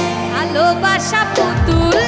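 Bengali Baul folk song with instrumental accompaniment: sustained low notes under short melodic runs, with drum beats coming in about one and a half seconds in.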